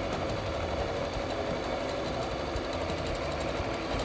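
Singer electric sewing machine running steadily at speed, stitching a seam.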